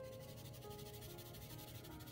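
Soft background music with long held notes, under the faint scratch of a colored charcoal pencil being stroked across paper.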